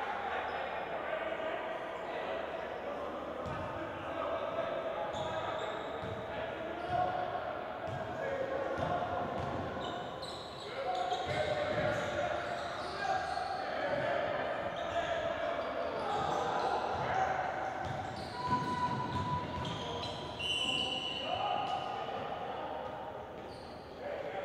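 A basketball bouncing on a hardwood gym floor, with repeated dribble thuds from a few seconds in, among players' shouting voices, all echoing in a large gym.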